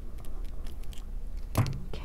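Small, quiet clicks and ticks of jewelry pliers working a wire loop and fine metal chain links being handled, several in a row. Near the end a woman starts to speak.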